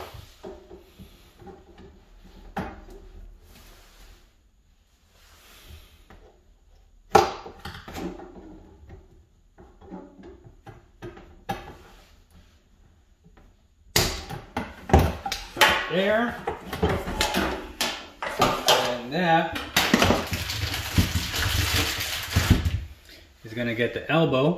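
Hands working plastic plumbing parts: faint scattered knocks and rattles, one sharp snap about seven seconds in, then a louder, busier run of clatter and rustling through most of the second half.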